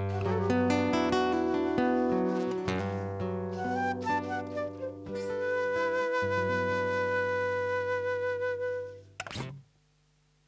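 Transverse flute and acoustic guitar playing together, the flute holding long notes over the plucked guitar. The music dies away about nine seconds in, followed by a short knock.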